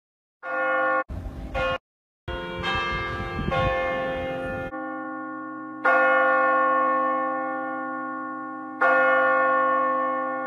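A bell tolling, each stroke ringing out and slowly fading. The first few seconds come in short chopped pieces with a low rumble under them, then two clean strokes follow about three seconds apart.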